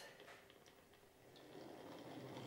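Near silence: a Kleinbahn H0 model of the ÖBB 2067 diesel shunting locomotive running faintly along its track, with a few faint ticks, a little louder near the end.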